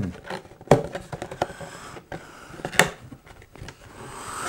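Rigid clear plastic packaging insert handled and flexed, giving a few sharp clicks and some crinkling; the loudest click comes just under a second in.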